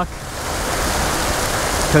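Steady rush of creek water pouring over a small ledge into a pool.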